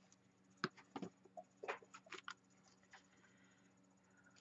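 A few faint, short clicks and taps, bunched between about half a second and two and a half seconds in, over quiet room hum.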